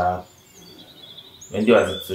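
Conversational speech that stops briefly and resumes about a second and a half in. Faint bird chirps can be heard in the background during the pause.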